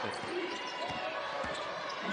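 Basketball being dribbled on a hardwood court, a few separate bounces, under steady arena crowd noise.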